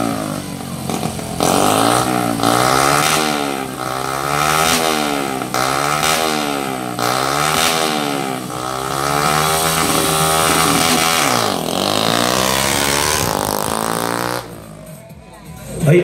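A small underbone drag motorcycle's single-cylinder engine revved again and again while staged for a launch, its pitch rising and falling about once a second, then held at a steady high rev before the sound drops away near the end.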